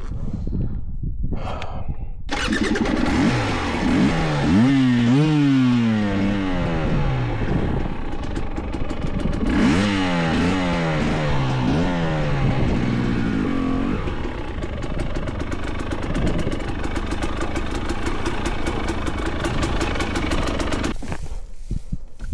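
Two-stroke enduro motorcycle engine running loud on a rough mountain trail. The revs rise and fall again and again as the throttle is worked. It picks up about two seconds in and drops away near the end as the bike comes to a stop.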